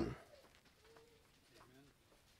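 Faint, soft cooing of a dove: a short steady low note about a second in, then a second bending note near the end.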